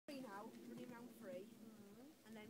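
Faint talking over a steady, low buzzing drone.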